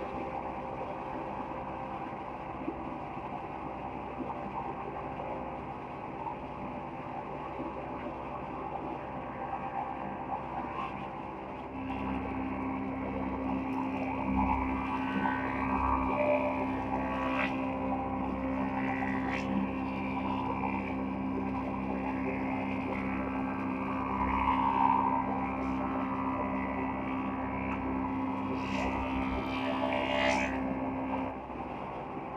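Wood planing machines running. At first there is a steady machine drone. About a third of the way through it gives way to a louder, steady hum from a multi-head planer as boards are fed through, with a few short knocks of wood.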